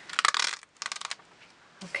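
Light clicking and clattering of small hard craft items handled on a tabletop, in two quick runs with a short pause between them.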